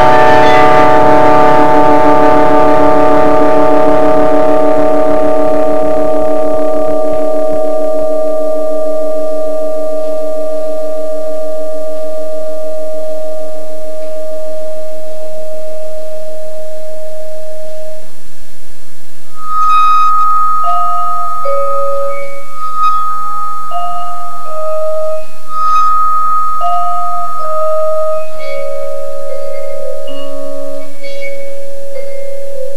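Vibraphone: a chord struck just before the start rings on and slowly dies away with the sustain pedal held. About twenty seconds in, a slow melody of single notes begins, each ringing on.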